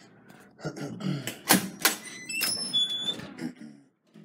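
A few sharp clacks and knocks, like a door and its latch being passed through, with a short high-pitched squeak or tone in the middle and indistinct voices under it.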